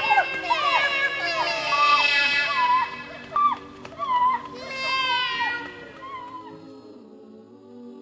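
Two women crying out repeatedly in short yells as they run away, over background music. The cries fade out over the last two seconds or so.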